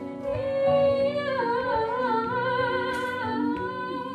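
A woman singing a slow melody with vibrato into a microphone, backed by a live band with electric guitar and double bass.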